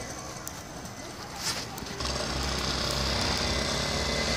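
Small dirt bike's engine running: faint at first, then a steady engine hum that sets in about halfway through and slowly gets louder as the bike comes nearer.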